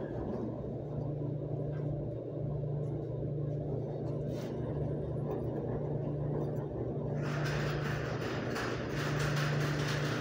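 Laundromat washers and dryers running with a steady low hum. About seven seconds in a hissing rush starts, which is water pouring into a Maytag front-load washer as it fills.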